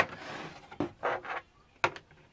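Plastic toy staircase clicking and knocking against a plastic toy castle as it is fitted onto the castle's side: a few light clicks, the sharpest near the end.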